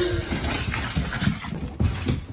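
A small dog's claws clicking and scuffling on a hardwood floor: a dense, rapid run of clicks that cuts off suddenly about one and a half seconds in.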